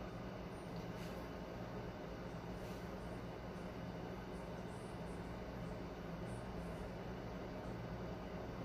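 Steady low hum of a quiet room, with a few faint short sniffs in the middle of the stretch as a man smells freshly sprayed perfume on his forearm.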